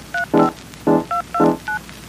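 Background music: keyboard notes about every half second, with short two-tone electronic beeps like telephone keypad tones between them.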